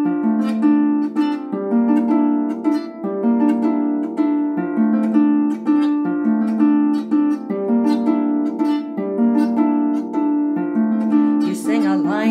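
Clarsach (Celtic lever harp) playing a song's instrumental introduction: plucked notes in a steady repeating pattern, each ringing on into the next. A singing voice comes in right at the end.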